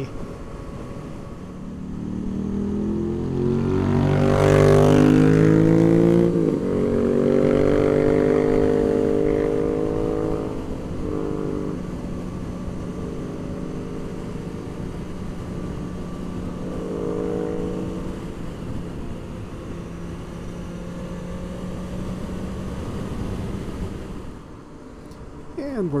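Honda CB650F's inline-four engine heard from the rider's seat. It accelerates with its pitch rising over a few seconds and a gear change about six seconds in, then holds a steady highway cruise under wind and road rush, easing off near the end.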